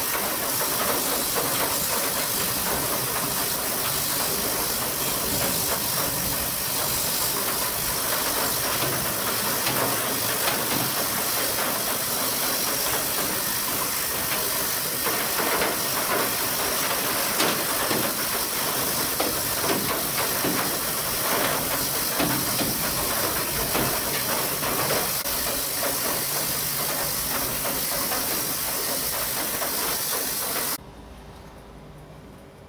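A steady hiss of noise, strongest in the high end, with a few faint ticks in the middle stretch.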